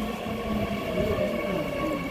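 Seoul Metro Line 9 subway car interior: steady train noise with a thin electric whine, as a recorded Korean onboard announcement begins over the car's speakers.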